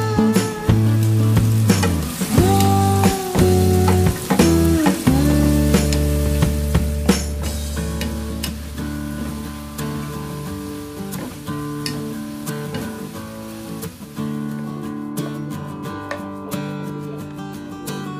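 Cubed tofu and pechay sizzling in a nonstick frying pan as a wooden spatula stirs them, the sizzle fading in the second half. Background music plays over it throughout.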